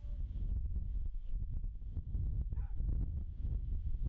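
Wind buffeting an outdoor microphone, a steady low rumble, with a brief faint animal call about two and a half seconds in.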